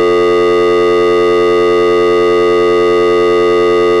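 A loud, buzzy electronic drone held on one unchanging pitch, with no rise, fall or break.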